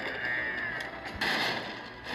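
Cartoon sound effects played through a TV speaker: a sustained effect, then a sudden heavy crash about a second in.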